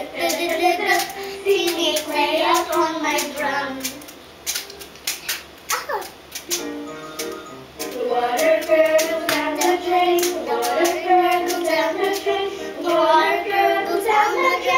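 A young child singing a phonics letter-sound song over a backing track with a steady beat; the singing drops away for a few seconds in the middle, then comes back.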